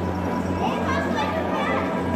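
Background voices of people chattering, some high like children's, over a steady low hum.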